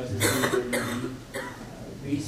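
A person coughing several times, the first cough the loudest.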